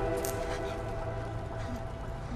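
Soft background score: a held chord of a few sustained notes, slowly fading away.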